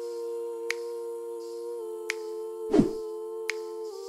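Outro background music: a held, steady synth chord with a sharp click about every second and a half, and a short falling whoosh about three quarters of the way through.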